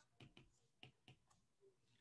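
Near silence with a few faint, short clicks in the first second or so: a stylus tapping on a tablet screen while writing.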